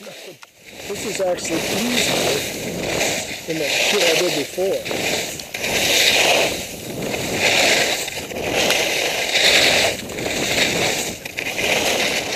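Skis scraping and hissing across groomed snow during a run, the scrape swelling with each turn about every two seconds, with wind rushing over the camera's microphone.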